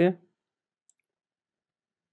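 A man's voice ends a word, followed by near silence with a single faint click about a second in.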